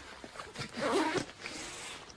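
A short low vocal sound from a man close to a phone's microphone, followed by a soft steady hissing rustle of breath or handling noise.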